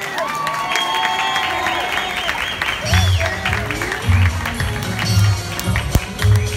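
Audience applauding as Greek folk dance music starts: a wavering melodic line first, then a strong bass beat comes in about three seconds in.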